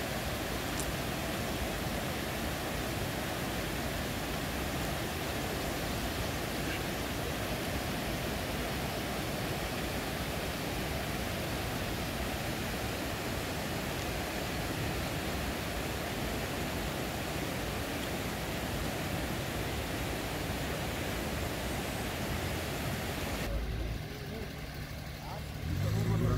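Steady, even rushing noise, spread from low to high pitches, that cuts off suddenly about 23 seconds in, leaving a quieter low hum.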